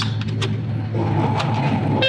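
John Deere 70 Series STS combine running, heard from inside the cab as a steady low hum. About a second in, a higher steady whir joins as the separator and feeder house are engaged, with a few light clicks.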